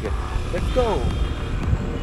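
Steady low rumble of wind and road noise while riding a Suzuki Burgman 125 scooter at low speed. A short, falling-pitch vocal sound from the rider comes about three-quarters of a second in.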